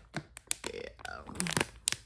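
Plastic food packets crinkling and crackling as they are handled, with several short sharp crackles.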